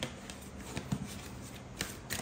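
A tarot card deck being shuffled by hand, heard as a few faint, short flicks and taps of the cards.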